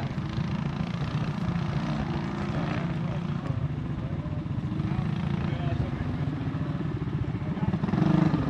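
Small single-cylinder cyclekart engines running at a distance, a steady, even engine sound.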